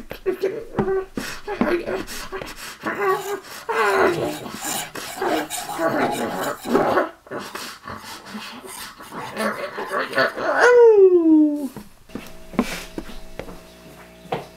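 High-pitched squeaky creature voice jabbering and yelping over quick taps and knocks, ending in a long falling squeal about eleven seconds in. After that a steady low hum with a few clicks.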